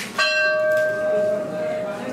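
A metal temple bell struck once, then ringing on in one steady tone that slowly fades.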